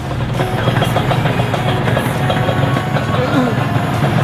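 Two-stroke motorcycle engines idling steadily: a Yamaha RX-King and a Kawasaki Ninja 150 running side by side.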